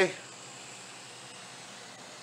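Steady faint hiss of cooling fans from a running water-cooled PC.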